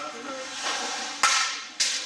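A softball bat strikes a ball with a sharp crack about a second and a quarter in. A second sharp smack follows about half a second later.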